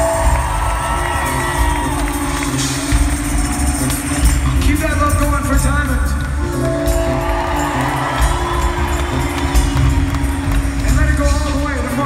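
Live rock band vamping through a PA, heard from within the audience, with steady bass and drums and sustained chords. A singer's voice runs up and down over it about five seconds in and again near the end, and the crowd cheers.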